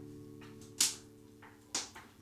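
Footsteps on a hard floor: two sharp steps about a second apart, with the last sustained notes of an acoustic guitar dying away beneath them.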